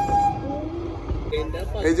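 A train horn sounds one steady note that cuts off shortly after the start, over the low rumble of a narrow-gauge toy train running. A man's voice begins near the end.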